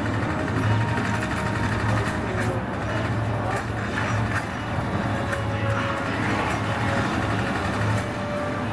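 Action film soundtrack heard through a room's speakers: music mixed with a speedboat's engine and chase effects, with a few short cracks.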